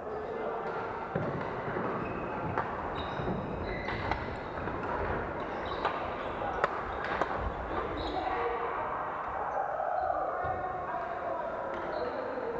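Badminton rackets striking shuttlecocks, a series of sharp, irregular hits, with short shoe squeaks on the wooden court. Voices murmur behind, all echoing in a large sports hall.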